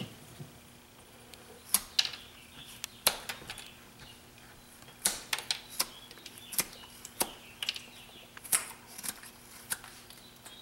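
Carving knife slicing chips off a wooden blank: about a dozen sharp, irregular cuts and snaps, with a short lull near the middle, as the corners of the head are roughed off.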